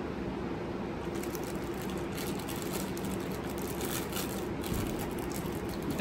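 Steady low room hum with faint crinkling of a plastic bag of palmera pastries being handled.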